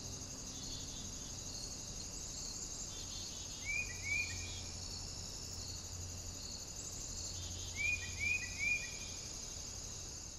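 Outdoor nature ambience: crickets chirring steadily and high, with a bird giving two short rising calls about four seconds in and three more near the end.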